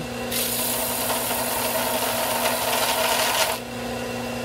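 Belt sander running with the edge of a small wooden wheel, spinning on a screwdriver shaft, held against the sanding belt: a steady rasping hiss of wood being sanded over the motor's hum, starting just after the beginning and stopping shortly before the end.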